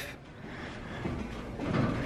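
Footsteps climbing a staircase of perforated steel grating treads, a low rattle of the metal that gets a little louder in the second half.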